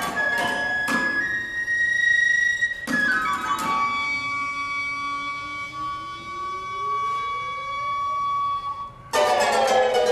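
Live chamber music for flute, plucked strings and percussion: short held flute notes punctuated by sharp plucked or struck attacks, then a struck note about three seconds in that rings on with many overtones while a slow glide rises under it. A sudden loud full-ensemble entry comes about a second before the end.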